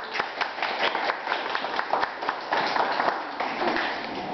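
A small audience clapping: many separate, irregular hand claps that make a thin round of applause.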